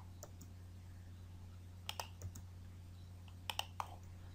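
Computer mouse and keyboard clicks: small clusters of sharp clicks near the start, around two seconds in, and near the end, over a faint steady low hum.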